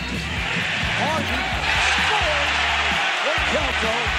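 Basketball game broadcast sound: arena crowd noise that swells a little under two seconds in, with a ball bouncing on the court, over a steady background music bass.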